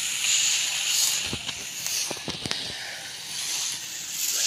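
Hand-pump pressure sprayer spraying water in a steady hiss, with a few faint clicks in the middle.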